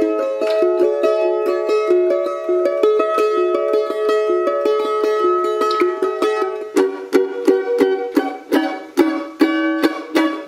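A revoiced 1949 Gibson F-12 mandolin played with a flatpick: a fast run of picked notes, turning about seven seconds in to sharper, more separated strokes.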